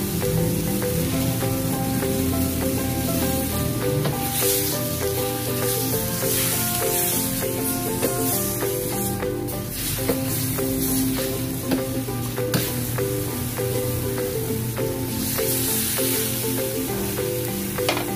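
Pork frying and sizzling in a wok over a gas flame, with a metal ladle scraping and knocking on the pan as the meat is stirred. Background music with steady notes plays underneath.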